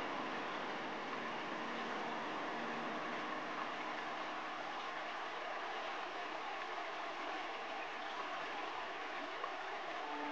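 Fast-flowing mountain river rushing over rocks and rapids: a steady, even roar of water.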